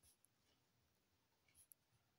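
Near silence, with the faint sound of a pen writing on notebook paper and a couple of tiny ticks near the start and about one and a half seconds in.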